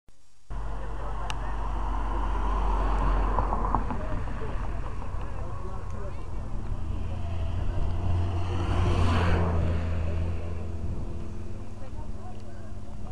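Cars passing close along the road. The engine and tyre noise swells about three seconds in and again about nine seconds in, over a steady low hum and the voices of people at the roadside.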